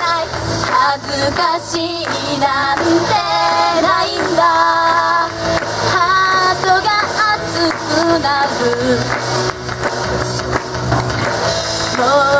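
Two young women singing an up-tempo pop song live into handheld microphones over backing music, their voices carrying the melody throughout.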